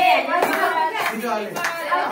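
Rhythmic hand clapping, about one clap every 0.6 seconds, under several voices singing and talking together.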